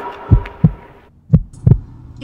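Heartbeat sound effect: two double thumps, low and short, about a second apart, over a sustained hum that fades out about a second in.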